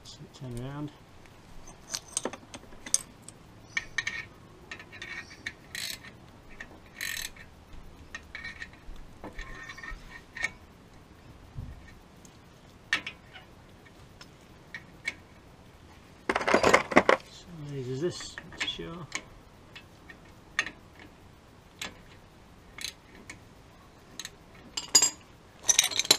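Scattered metallic clicks and clinks of hand tools and brake-caliper hardware being handled while a caliper bolt is threaded back in by hand, with a louder clatter about two-thirds of the way through.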